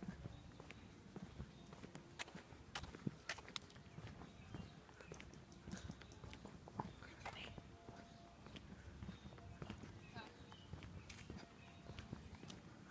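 Faint footsteps on a concrete sidewalk, heard as irregular clicks over the low rumble of a hand-held phone being carried.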